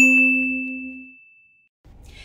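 A bright, high ding sound effect rings out over the last low notes of a plucked ukulele jingle. Both fade away within about a second and a half.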